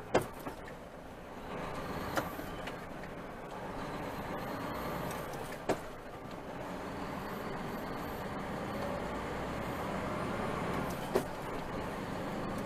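Steady engine and road noise heard from inside a truck cab while it rolls slowly in traffic, broken by four short sharp clicks: one at the start, then at about 2, 6 and 11 seconds.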